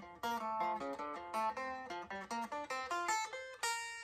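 Solid-body electric guitar playing a quick run of single picked notes, about six a second, ending on a held note near the end: a practice lick still being learned.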